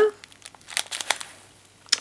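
Clear plastic bag crinkling as it is handled, a short run of sharp crackles in the first second or so.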